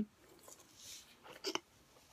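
Mostly quiet, with a faint soft rustle about a second in and then one short, soft vocal sound from a person about one and a half seconds in.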